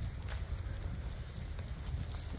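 Steady rain falling, an even hiss with a low rumble beneath it.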